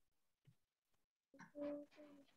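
Near silence on the call audio, then about a second and a half in a faint, steady-pitched hum begins.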